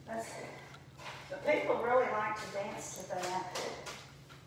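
Indistinct speech: a voice talking in short, low phrases that are too unclear to make out as words.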